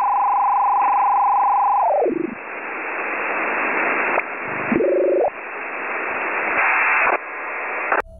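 Electronic telephone-line sounds: a steady tone that slides down in pitch and dies away about two seconds in, then a hiss of static that swells and cuts back several times, with a brief rising warble midway. The sound is thin and narrow, like a phone line.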